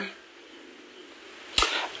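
Only speech: a woman's talk breaks off, with about a second and a half of quiet room tone, then she starts speaking again near the end.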